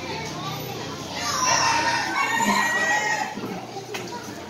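A rooster crowing once, a single call of about two seconds starting about a second in, over the chatter of a crowd.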